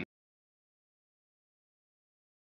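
Dead silence: the audio track cuts off abruptly at the very start, and nothing at all is heard after.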